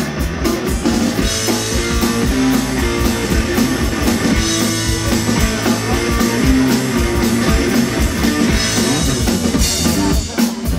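Rock band playing live, a passage without singing: guitar, bass guitar and drum kit keeping a steady, driving beat.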